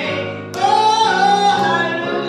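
A woman singing a slow gospel song into a handheld microphone, holding long notes, with a louder phrase starting about half a second in.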